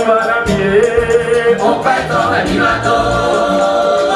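A large choir singing together in harmony, holding long notes and moving between them every second or so.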